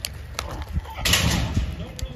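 Saddle bronc horse bucking in arena dirt: dull hoof thuds and a couple of sharp knocks, with a loud rushing burst of noise about a second in.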